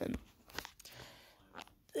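A person's soft breath and small mouth clicks close to the microphone in a pause between words, just after the end of a spoken word.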